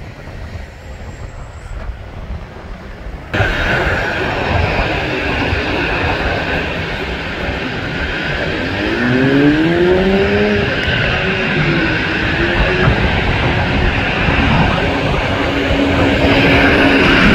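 Wind noise rising at first, then after about three seconds a cut to the steady whine and rumble of a Boeing 777-300ER's GE90 turbofan engines as the airliner taxis onto the runway. A pitched tone rises and falls about halfway through, and the sound grows a little louder after that.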